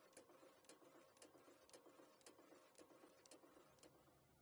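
Morgana FRN5 rotary numbering machine running, heard faintly: an even clicking of about two clicks a second over a low steady hum as sheets feed through and are numbered.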